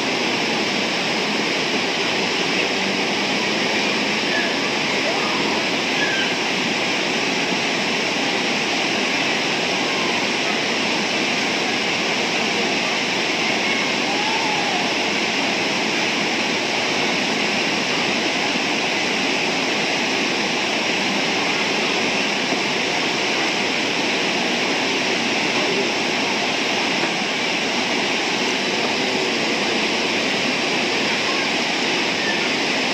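Rushing river rapids pouring over rocks: a steady, unbroken roar of water.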